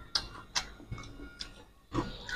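Eating by hand from steel plates: short, sharp clicks, about two a second, as fingers work rice and fish curry on the metal and mouths chew.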